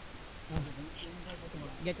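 Speech: men's voices talking quietly, with a short spoken phrase near the end.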